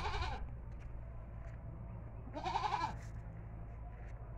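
A goat bleating once, a single wavering call about two and a half seconds in, over a faint steady low hum.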